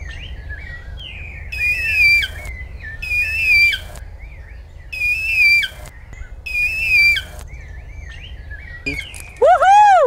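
Harpy eagle calling: a series of high whistled calls, each under a second, repeated about every one and a half seconds. Near the end a person gives a loud, rising-and-falling 'woohoo' call.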